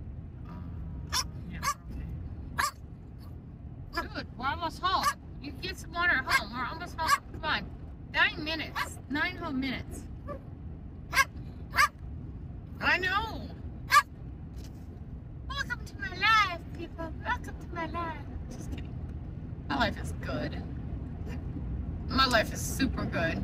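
A dog in a moving car whining in repeated rising-and-falling cries, mixed with many short, sharp yips, over the steady low hum of road noise.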